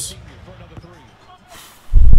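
Faint TV broadcast audio of an NBA basketball game: a commentator talking over arena noise. Near the end comes a short hiss, then a loud low thump.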